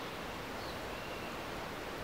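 Steady, even background hiss of outdoor ambience with no distinct events; the barbell makes no audible clank.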